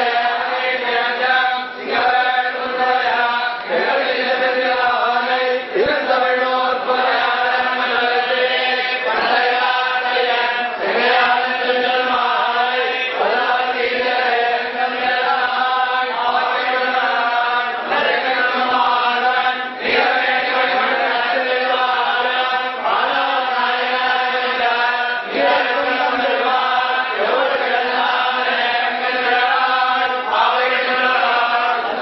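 Group of men chanting together in unison: a continuous, steady religious recitation on a held pitch, kept up without pause.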